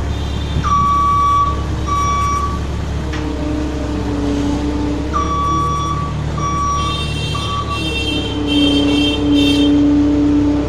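JCB 170 skid-steer loader's diesel engine running while it pushes garbage, with its reversing alarm sounding in short, irregular beeps. The engine and hydraulics whine rises twice as the machine takes load.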